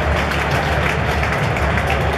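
Large stadium crowd applauding and cheering, a steady mass of clapping.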